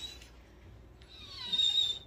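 A dog whining in a thin, high-pitched tone, faint at first and louder through the second half, the whine of a dog eager to go out.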